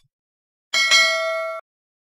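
A bell-like 'ding' sound effect for a subscribe and notification-bell animation. It is a single chime of several pitches, starting suddenly just under a second in and cut off abruptly less than a second later.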